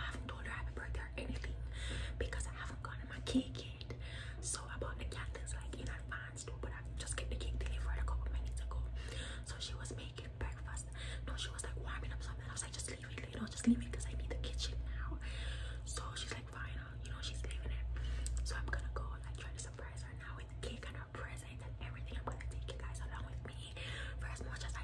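A woman whispering close to the microphone, talking continuously, over a steady low hum.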